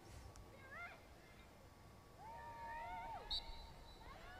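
Faint, distant shouts on an open lacrosse field: a couple of short rising calls about a second in, then one longer held call that drops at its end. A brief sharp click follows just after the long call.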